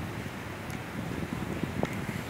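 Wind buffeting the microphone in uneven low rumbling gusts, with one brief faint tick near the end.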